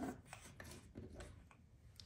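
Faint rustling with a few light clicks: hands handling a crocheted acrylic-yarn hat and its loose yarn on a tabletop.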